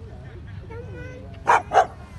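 A dog barks twice in quick succession, two short loud barks about a second and a half in, over background chatter from people nearby.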